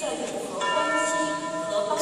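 A bell-like chime: several steady ringing tones sound together about half a second in and hold for just over a second before fading, over a murmur of voices echoing in a large hall.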